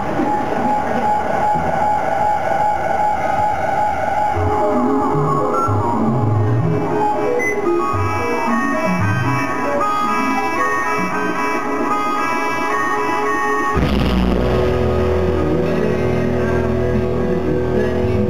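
Live indie band playing: a hand-held reed instrument blown at the microphone plays sustained notes and a melody over electric guitar, then the full band with bass and drums comes in suddenly about 14 seconds in.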